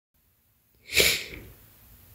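A single sneeze from a woman close to the microphone, about a second in, fading quickly.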